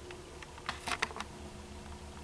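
A quick cluster of soft clicks and taps, handling noise from fingers moving close to the camera, about half a second to a second and a quarter in, over a faint steady low hum.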